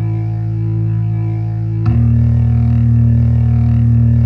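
Electronic dance music played on synthesizers: a sustained low synth chord held steady. About two seconds in, it changes to a different, louder held chord.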